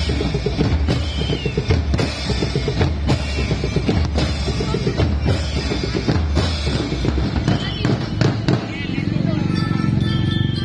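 A marching drum corps playing: bass drums and snare drums beat a quick, steady pattern, with cymbal crashes about once a second.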